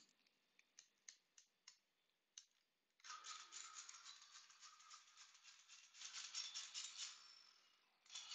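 Hand-powered dynamo flashlight being worked to charge it: a faint, fast clicking whir of the dynamo mechanism. A few light clicks come first, then the continuous whirring starts about three seconds in and stops just before the end.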